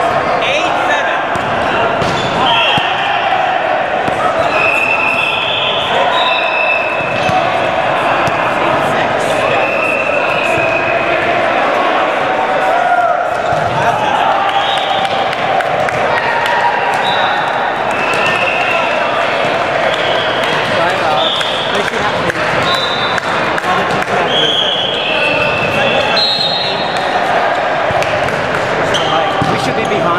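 Busy gymnasium din: many overlapping voices echoing in the hall, balls bouncing on the hardwood floor, and frequent short, high sneaker squeaks.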